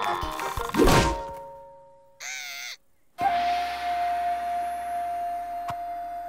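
Cartoon soundtrack of sound effects and music: a loud crash about a second in that fades away, then after a pause a short wavering cry, then a single held note over a faint hiss.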